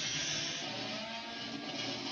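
Cartoon sound effect playing from a television: a rushing hiss that starts suddenly and holds steady, with faint held tones entering about half a second in.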